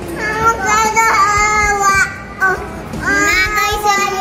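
A young child's voice singing two long held notes with a short break between them.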